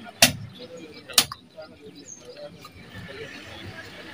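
Two loud, sharp cracks about a second apart, over low background noise.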